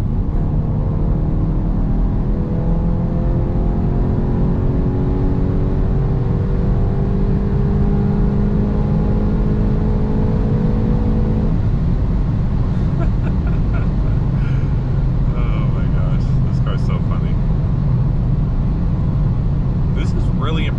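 A 2022 Volkswagen Golf GTI (Mk8) turbocharged 2.0-litre four-cylinder at full throttle, heard from inside the cabin, its pitch climbing slowly for about ten seconds. About halfway through, the engine note cuts off abruptly as the 125 mph limiter cuts the power, leaving steady tyre and wind noise at speed.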